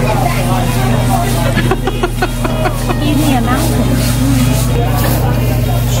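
Restaurant dining-room sound: people talking and laughing over a steady low hum, with a few short sharp clicks about two seconds in.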